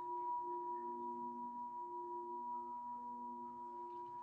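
Background meditation music of held, ringing singing-bowl-like tones: a high tone stays steady while the lower tones soften about halfway through.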